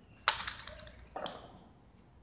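Two sharp cracks of a hard jai alai ball (pelota) striking the court, each with a short ringing tail. The first, about a quarter second in, is the loudest; a softer one follows under a second later.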